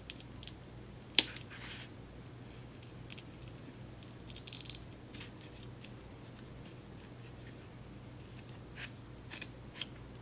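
A thin metal spatula prying a blush pan out of a plastic palette insert: small scrapes and clicks, with one sharp click about a second in and a brief scraping crackle around four seconds in.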